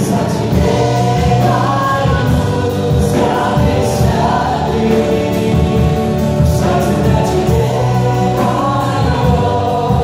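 A live worship band: several voices singing together in held notes over acoustic and electric guitars and a drum kit, with cymbal strokes now and then.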